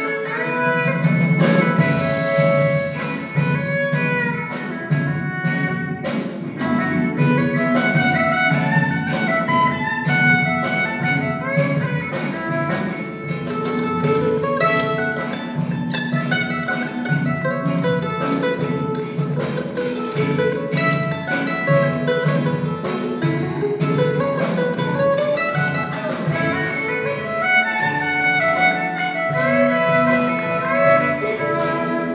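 Live string music: a violin and a mandolin playing a busy tune together, with many quick plucked notes over bowed lines, and an orchestra accompanying.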